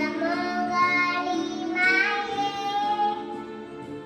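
A young girl singing into a handheld microphone, holding one long note in the second half before her voice fades near the end.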